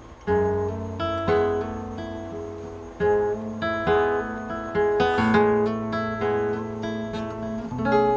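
Solo classical guitar played fingerstyle: plucked chords over deep bass notes struck about once a second, with a quick run of notes about five seconds in.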